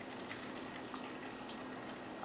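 A Siberian husky eating a cupcake off the floor: small, wet, irregular smacking clicks of his mouth over a steady background hiss and faint low hum.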